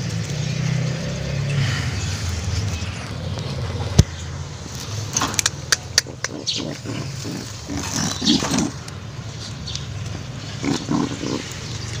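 Brooding King-cross pigeon on its nest giving low coos and grunts as it is disturbed, with a sharp click about four seconds in and then clicks and rustling of the woven bamboo nest basket as a hand reaches under the bird.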